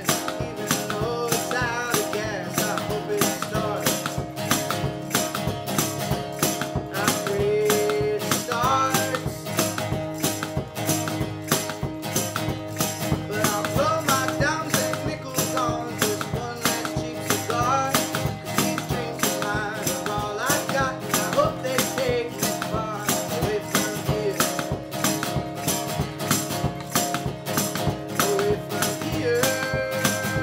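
Instrumental break of a folk song: acoustic guitar strummed steadily while a rack-held harmonica plays bending melody lines over a steady percussive beat.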